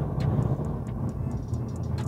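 Steady low drone of engine, tyre and road noise inside the cabin of a Mercedes-Benz CLA 250 cruising at about 115 km/h in fourth gear, with a few faint ticks.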